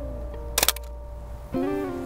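Guitar background music, with a short sharp clack about half a second in from the Bronica SQ medium-format SLR firing: mirror and leaf shutter releasing as the exposure is made.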